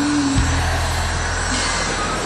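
Live concert recording of a band playing, with held low bass notes under a dense, noisy wash of sound.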